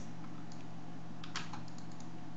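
A few light clicks from a computer keyboard and mouse, bunched about a second and a half in, as a command is copied and a right-click menu is opened. A steady low hum runs underneath.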